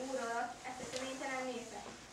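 A girl's voice reciting in Hungarian, falling into a short pause near the end.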